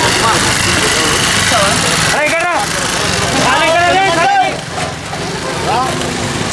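Steady, loud outdoor background noise with people's voices talking in a few short stretches, about two seconds in, around the fourth second and near the end.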